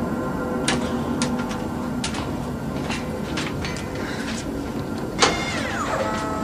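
Ambient film soundtrack: a steady low drone with scattered sharp clicks, and near the end a sudden hit followed by a falling whine.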